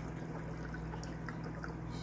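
Aquarium filters and air bubblers running: water trickling and bubbling over a steady low hum.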